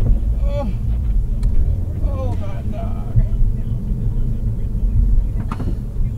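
Steady low rumble of a car's road and engine noise heard inside the cabin. A voice murmurs briefly twice, and there are a couple of faint clicks.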